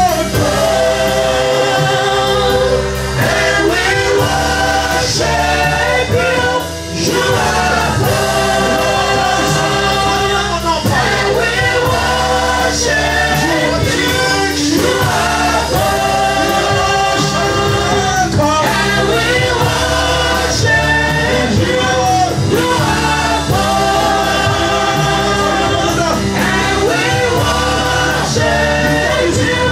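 Gospel worship song sung by a group of voices in a choir-like ensemble, with sustained, swelling lines over a steady band accompaniment and beat.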